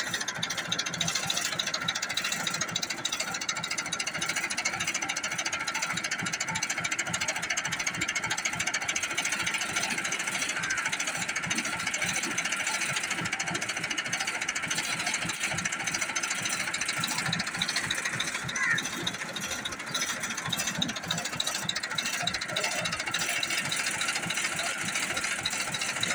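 Massey Ferguson 265 tractor's four-cylinder diesel engine idling with a steady, rapid clatter.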